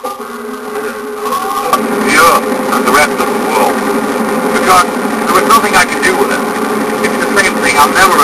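A voice talking over the steady running noise of a car on the road, heard from inside the car. In the first second or two, the steady tones of music fade out before the talking starts.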